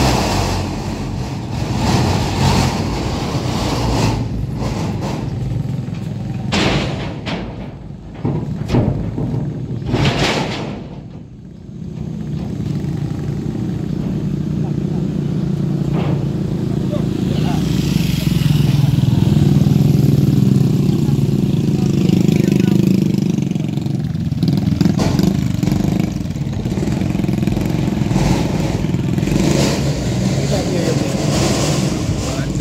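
Vehicle engines running: a road roller and motorcycles riding past, with a steadier, louder engine drone in the second half. Voices in the background.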